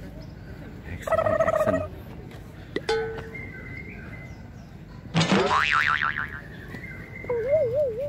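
Cartoon-style comedy sound effects added in editing: a short held tone about a second in, a click near the three-second mark, then a rising boing that wobbles around five seconds in, and a wobbling, springy boing near the end.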